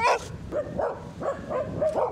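A dog barking: one loud bark at the start, then a run of about five shorter barks.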